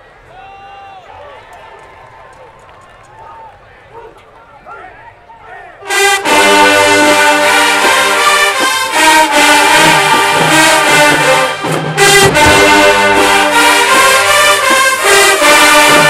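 Faint crowd voices for about six seconds, then a marching band in the stands cuts in loud, playing a brass-heavy tune led by sousaphones, trombones and trumpets, with a short break near the twelfth second.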